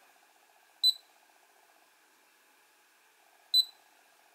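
Two short, high electronic beeps about three seconds apart from the RunCam Split FPV camera's button-feedback beeper as its settings menu is stepped through, over a faint steady background hum.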